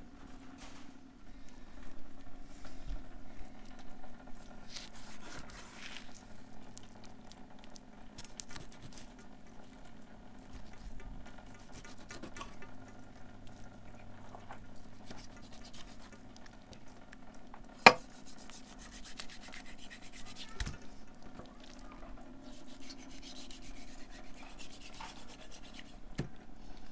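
A kitchen knife slicing and scraping through raw wild boar meat on a glass table: faint rubbing and cutting sounds over a low steady hum, with one sharp knock about eighteen seconds in.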